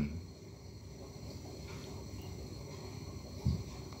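Quiet background with faint steady high tones and one short, soft low thump about three and a half seconds in.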